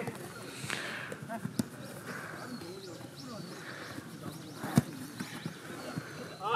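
Distant shouts and calls of players during a football game, with a few sharp thuds of the ball being kicked, the loudest about five seconds in.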